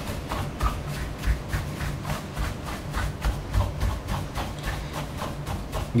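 Bristle dusting brush sweeping quickly back and forth over the dusty plastic knobs of a Peavey RQ2310 mixing console: rapid repeated brushing strokes, several a second, with soft low thuds mixed in.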